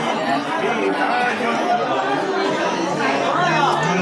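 Several people talking over one another in a crowd: steady overlapping chatter.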